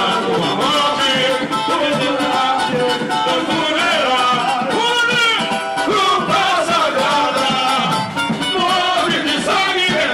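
Samba-enredo sung live by several male voices on microphones over a samba band, loud and continuous.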